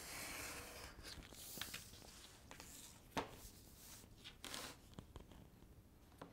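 Utility knife drawn along a steel ruler, cutting through a sheet of board with the grain in a series of faint strokes, with a sharp click about three seconds in.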